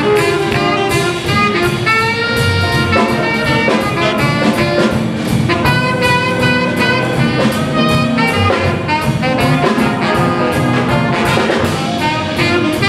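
High school jazz big band playing live: saxophones and brass sounding chords together over upright bass, piano and drums, with a steady beat.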